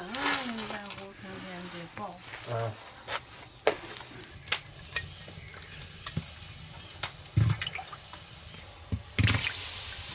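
Ears of corn going one by one into water in a large wok for boiling: a series of separate sharp knocks with small splashes, and a louder rush of splashing water near the end. A voice is heard briefly at the start.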